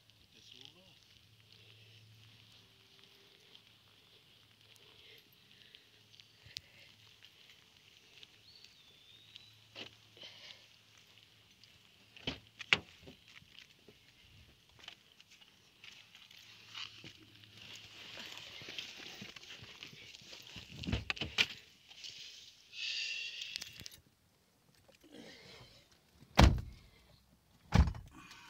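Quiet outdoor ambience with a faint steady high hiss, footsteps on pavement and scattered small knocks. Near the end come a few heavier thumps as someone gets into a car.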